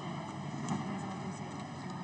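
Steady room tone of a large hall heard through an open microphone: an even hiss with faint steady tones and a few faint clicks.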